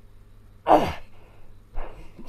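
A man's loud, effortful sigh-like exhale with a falling pitch about two-thirds of a second in, then a shorter breath near the end, from the strain of a prone back-bend exercise.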